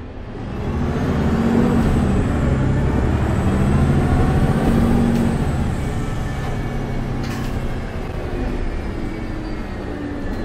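MAN A22 Euro 6 bus with a Voith automatic gearbox, heard from inside the cabin, pulling away hard. The engine note swells about half a second in, dips and climbs again partway through, and stays loud for about five seconds. It then eases to a lighter steady run, with a single knock about seven seconds in.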